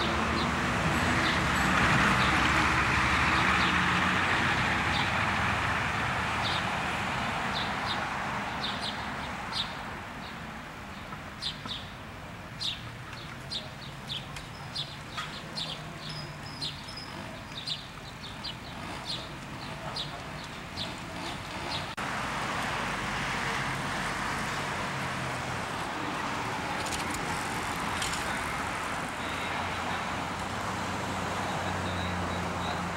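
City street traffic: cars driving past in a steady rush, loudest in the first few seconds and again in the last third. Through the quieter middle, small birds chirp many times in short, high notes.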